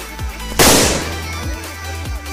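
A ground firecracker goes off with one loud bang about half a second in, its echo dying away within half a second. Background electronic music with a steady beat plays throughout.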